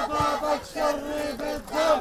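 A crowd of protesters chanting a slogan in unison, in short rhythmic phrases with held syllables.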